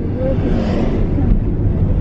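Car interior road and engine noise while driving: a steady low rumble, with a faint voice briefly near the start.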